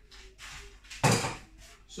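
A single sharp knock about a second in, with a short fading tail, after a few soft handling noises: kitchen things being put down or a cupboard being shut.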